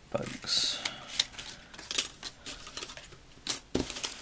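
Paper and chipboard scrapbook embellishments being handled and set down on a tabletop: scattered light clicks and taps, with a brief rustle about half a second in.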